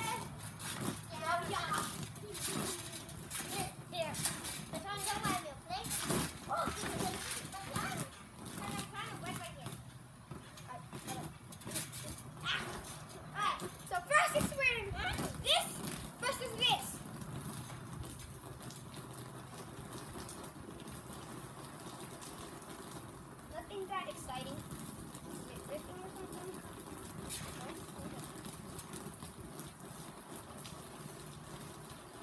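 Children's voices calling out and squealing as they play on a backyard trampoline, with a few sharp knocks among them. The voices fall away about halfway through, leaving a quieter steady background hum with one short burst of voice later on.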